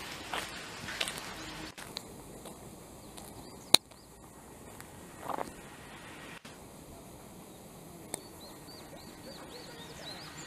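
Quiet outdoor ambience with a run of short, high chirps near the end. Two sharp clicks, the louder one about four seconds in, and a brief rustling swell about five seconds in.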